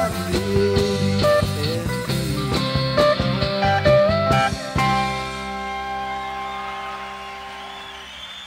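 Live country-rock band (electric guitars, pedal steel guitar, electric bass and drums) playing the last bars of a song, recorded from the soundboard. About five seconds in, the drums stop and the band ends on one held chord that rings on and slowly fades.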